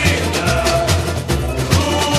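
Samba-enredo recording: a samba school bateria playing, with deep surdo beats under dense, fast high percussion. The singing briefly thins out here between sung lines.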